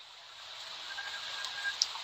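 Faint steady hiss, slowly getting louder, with a brief thin high tone about halfway through.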